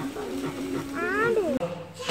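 A young child's voice making drawn-out, playful animal-like calls. One call rises and then falls in pitch about a second in, and the voice trails off near the end.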